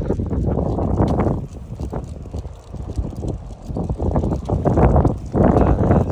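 Footsteps on a concrete walkway as a person walks a dog on a leash, with wind rumbling on the microphone.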